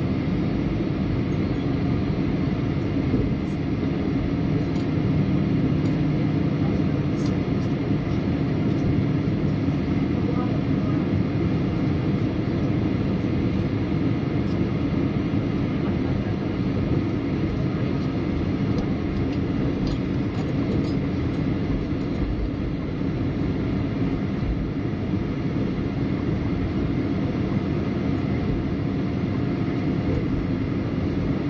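Steady cabin noise of a Boeing 737-800 taxiing: the low rumble of its CFM56 engines at taxi power mixed with a constant hum, heard from inside the cabin.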